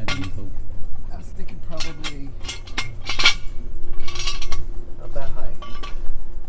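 Steel jack stand clinking and scraping as it is set in place under the car: a run of irregular sharp metal knocks and clinks, the loudest about halfway through, with a short metal-on-metal scrape just after.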